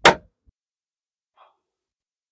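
Hinged dust cover on a flush-mount Anderson plug socket snapping shut once with a sharp click.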